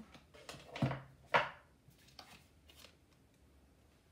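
Tarot cards being handled over the table: two short, sharp paper-card sounds, the louder about a second and a half in.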